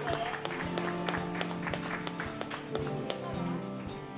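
Live rock band playing an instrumental passage: electric guitars holding chords over drums keeping a steady beat.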